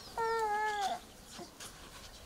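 A single pitched animal call, under a second long, falling slightly in pitch, with faint high chirps around it.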